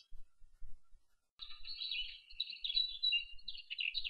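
Birds chirping: quiet for about the first second and a half, then a dense run of high chirps.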